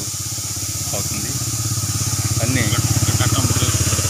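A motorcycle engine running close by with an even, rapid pulse, growing louder in the second half.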